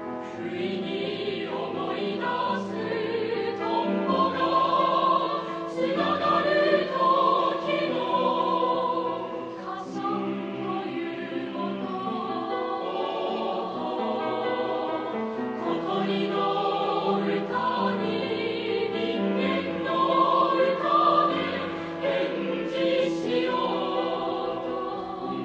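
A mixed choir singing a Japanese choral song in held, overlapping parts, swelling louder twice.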